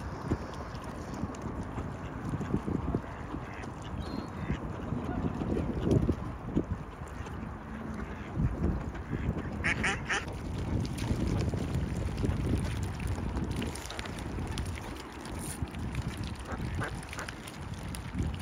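Mallard ducks quacking, with a quick run of short calls about ten seconds in and a few scattered quacks near the end, over a steady low rumble.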